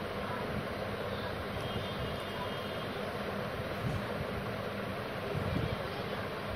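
Steady whooshing background noise, like a fan or room hiss, with a faint low hum. There are a couple of soft bumps about four and five and a half seconds in, as hands press and handle the paper pieces.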